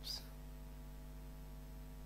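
Steady mains hum picked up by the recording, a low tone with a few fainter higher tones above it, unchanged throughout.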